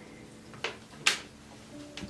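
Two brief wet dabs of a soaked washcloth against a silicone doll in a plastic baby bathtub, about half a second apart near the middle, with water splashing lightly.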